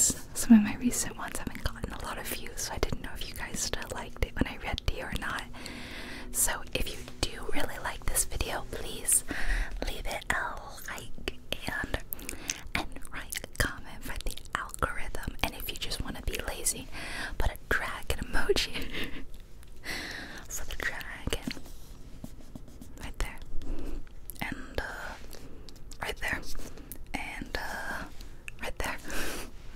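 A woman whispering close to the microphone, her soft speech dotted with small sharp clicks.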